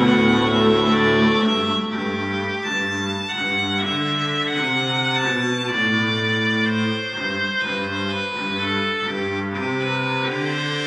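Music with bowed strings played loud through a home-built three-way bass horn loudspeaker in the open air. Sustained notes move in a slow, even pattern, and the deepest bass drops out about a second and a half in.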